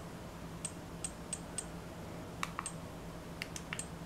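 Small push buttons on a handheld action camera clicking as they are pressed: about ten faint, sharp clicks in a few quick runs.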